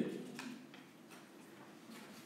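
Faint room tone with a few soft, separate ticks.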